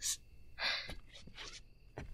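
A woman's short, breathy gasp of effort close to a binaural microphone, followed by a fainter breath about a second later, as she strains to hold someone up.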